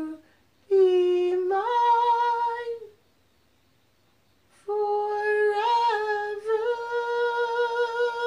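Slow solo flute melody of long held notes. A phrase rises and ends about three seconds in; after a pause of a second and a half the flute comes back, climbs to a long held note, and sustains it with vibrato.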